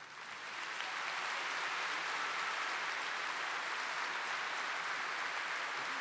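Large audience applauding: it swells from quiet over about the first second, then holds steady.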